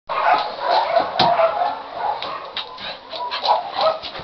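A dog vocalizing, loudest over the first two seconds and then in shorter spells.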